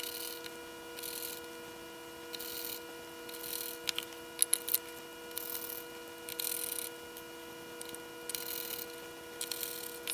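Screws being hand-driven into a small metal electronics case with a screwdriver: short faint scraping bursts about once a second, with a few small clicks. A steady hum of several tones sits under them.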